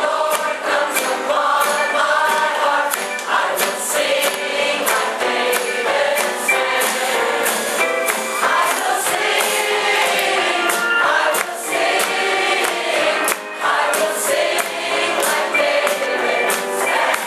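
Large mixed choir of women's and men's voices singing an upbeat gospel song together, with percussion keeping a steady beat underneath.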